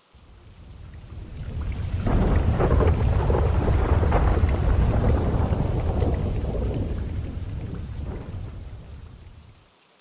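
Rolling thunder over steady rain: one long, deep rumble that swells over the first two seconds, holds, and fades away over the last few seconds.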